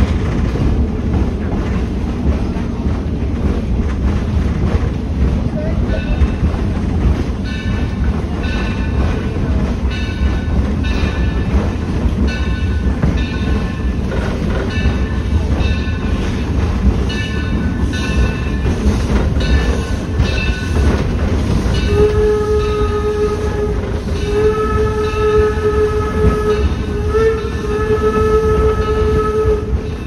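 Steady rumble and rail clatter of a passenger coach behind the 1873 Mason 0-6-4T steam locomotive Torch Lake, with a bell ringing in regular strokes from about six seconds in. Near the end the locomotive's steam whistle sounds four blasts, long, long, short, long: the grade-crossing signal.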